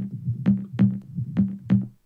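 Dirty-sounding electronic percussion loop playing back: five sharp hits over a steady low bass tone, stopping abruptly just before the end.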